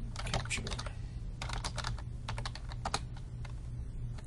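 Typing on a computer keyboard in quick runs of keystrokes, thinning out to a few single clicks near the end.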